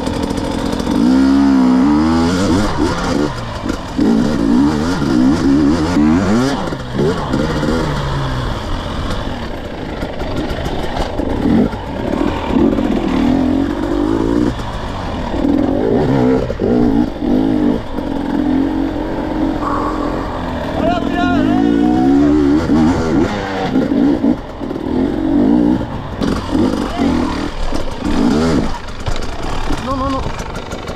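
Two-stroke KTM 250 EXC enduro motorcycle engine, revving up and down over and over as the rider works the throttle over rough off-road ground.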